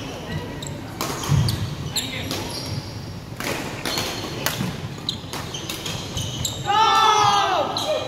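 Badminton rally in a large hall: irregular sharp racket hits on the shuttlecock and footwork thuds on the wooden court, with some echo. Near the end a player lets out a loud call that falls in pitch, the loudest sound, as the rally ends.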